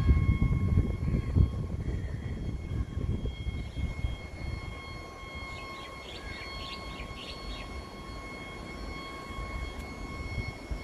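A steady electronic warning tone from the rail depot's lightning-alert signal sounds continuously. A low rumble is loudest in the first three seconds. Short chirps come about six to seven and a half seconds in.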